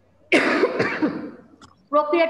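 A woman coughing over a video-call line: a sudden cough about a third of a second in that trails off over about a second.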